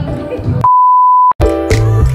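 Background music broken by a loud, steady single-pitch beep about two-thirds of a second long, with the music dropped out beneath it: an edited-in censor bleep. The music comes back straight after.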